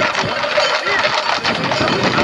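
A group of Camargue horses galloping on a tarmac road, their hooves making a dense, irregular clatter, with a small engine running underneath.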